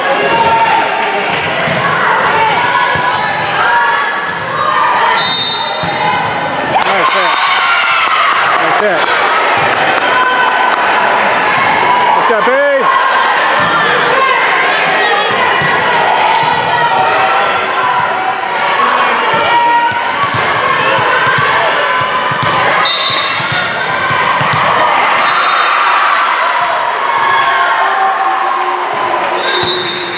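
Volleyball being played on a hardwood gym court: ball hits and sneaker squeaks amid the shouts and chatter of players and spectators, echoing in the large hall.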